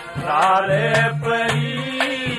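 Haryanvi ragni folk music: a voice singing a wavering, held melodic line over steady accompaniment, with drum strokes about twice a second.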